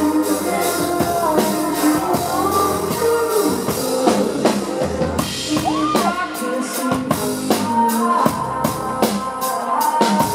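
Live band playing with a drum kit keeping a steady beat under pitched melodic lines that slide up and down.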